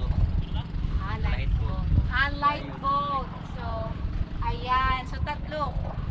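Men's voices talking in short stretches over a continuous, uneven low rumble.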